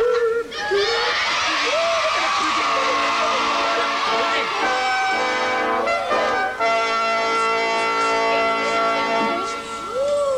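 Noisy studio-audience laughter and shouting, then a sustained musical chord held steady for about six seconds, fading out near the end.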